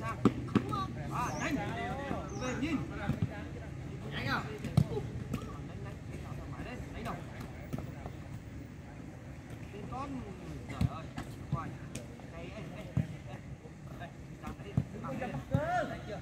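Footballs being struck and caught in goalkeeper drills: several sharp thuds at irregular intervals, amid shouting voices.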